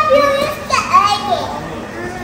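Young children's voices: a high-pitched, drawn-out call carrying into the start, then a few short squealing, gliding calls about a second in, without clear words.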